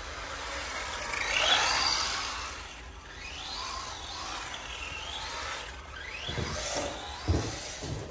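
Tamiya TT-02 radio-controlled car's electric motor and drivetrain whining, rising and falling in pitch as the car speeds up and slows, loudest about a second and a half in. A few dull thumps near the end.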